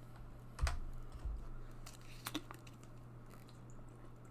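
A few scattered computer keyboard clicks, the first and loudest with a dull thump about half a second in, over a steady low electrical hum.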